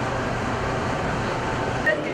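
Steady running noise heard inside a metro train carriage, with a low rumble and an even hiss and no distinct events.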